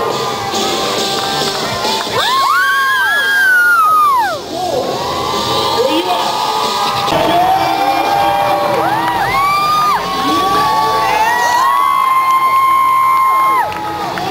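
Crowd cheering, with many high voices shouting and whooping in overlapping rising-and-falling cries, in two waves: about two to four seconds in and again from about nine to thirteen seconds in.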